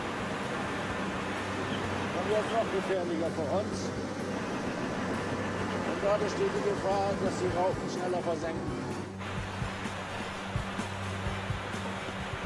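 A man speaking in a foreign language, subtitled, over background music, with a steady low hum underneath.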